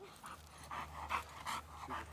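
Boxer dog panting rapidly, about three to four breaths a second, while straining on its leash.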